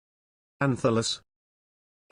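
A synthesized text-to-speech voice saying one short word, about half a second long, a little over half a second in; the rest is dead silence.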